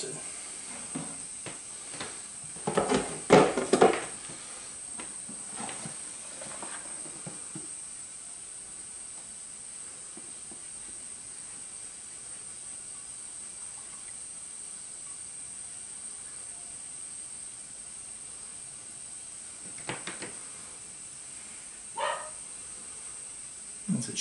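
Plastic snake-rack tub and lid being handled, a quick run of knocks and rattles about three seconds in and a few softer ones after. Then a long stretch of steady faint hiss with a constant high tone, broken by two small clicks near the end.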